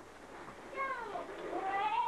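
A child's high-pitched voice making long gliding notes: one slides down, then another rises and holds near the end.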